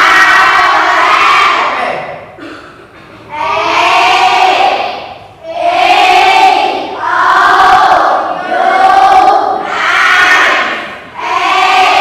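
A class of children reciting English vowel letters in unison, loud and together, in a string of about six drawn-out calls a couple of seconds apart.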